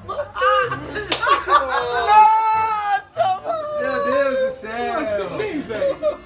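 A group of men laughing hard and shouting over one another, with long, high-pitched cries of laughter.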